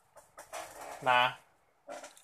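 A man's voice: one short, soft spoken syllable about a second in, after a faint breathy sound.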